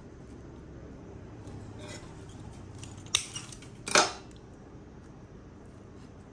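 Bonsai training wire being handled and wrapped around a thin branch by hand, with two sharp metallic clicks about three and four seconds in, the second the loudest.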